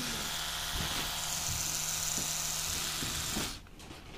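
Oral-B Pro 600 CrossAction electric toothbrush's oscillating-rotating motor running steadily in the air, with a steady buzzing hum; it cuts off about three and a half seconds in as it is switched off.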